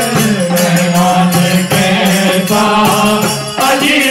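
Devotional bhajan: a harmonium playing sustained reedy chords under chanted group singing, kept in time by a steady beat of hand claps.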